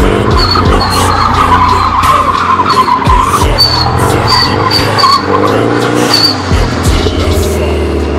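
Nissan S13 drift cars sliding on pavement: a wavering tire squeal with short high chirps, over an engine running at high revs, with music underneath.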